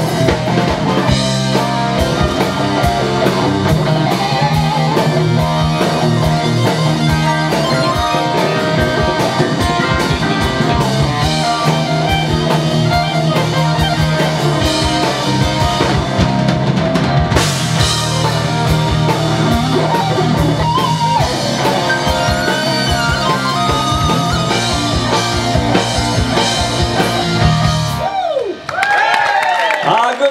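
Live rock band playing electric guitars, bass, fiddle and drum kit with a steady driving beat. The song stops about two seconds before the end, and the crowd begins to applaud.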